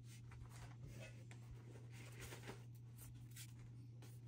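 Faint rustling and light scraping of paper and sketchbooks being handled and slid on a tabletop, over a low steady hum.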